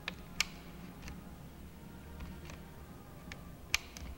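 A few sharp clicks over a faint low hum. The loudest comes near the end, another about half a second in, and fainter ticks fall between them.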